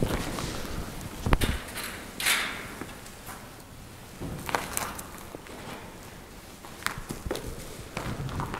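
Footsteps on old, rotted wooden railway ties: a few scattered knocks and brief scuffs of shoes on wood and loose debris, fairly quiet.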